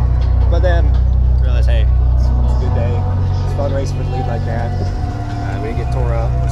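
Voices talking over a steady low rumble, which shifts in level about two and a half seconds in and again about five seconds in.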